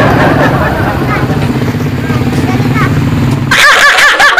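An engine runs steadily at an even low hum, with faint voices over it. Near the end the sound changes abruptly to loud laughter.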